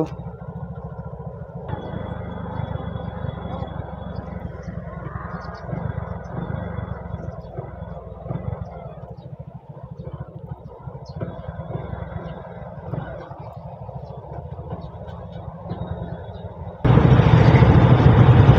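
Motorcycle engine running at low speed, a steady low putter. It turns suddenly louder and fuller near the end.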